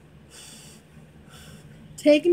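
Two soft breaths, breathy puffs about a second apart, from a woman with her hand at her mouth.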